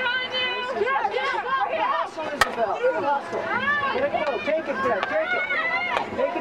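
Many voices talking and calling out over one another at a field hockey game, with a single sharp crack about two and a half seconds in.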